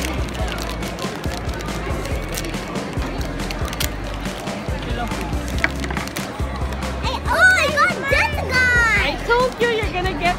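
Foil blind-bag toy packets being crinkled and torn open by hand, a run of short crackles. Near the end a high voice slides up and down over it, the loudest moment.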